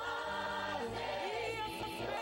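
Choir singing a gospel worship song over instrumental accompaniment, with long held notes and a steady bass line.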